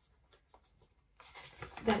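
Paper instruction sheets rustling as they are handled and turned, starting after about a second of near quiet.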